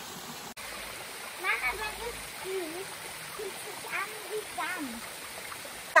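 A small mountain stream running over rocks into a shallow pool: a steady rush of water, with faint voices in the background.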